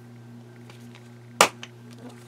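Hands handling the pages of a ring-binder journal: faint paper ticks and one sharp click about halfway through, over a steady low electrical hum.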